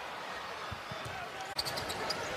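Game sound from a broadcast of an NBA game in a basketball arena: a steady murmur of crowd noise with a few sharp knocks of a basketball bouncing on the hardwood court. An abrupt break comes about one and a half seconds in.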